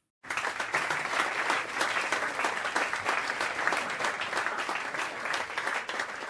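An audience applauding: many hands clapping at once in a steady stretch of applause, starting suddenly after a brief silence.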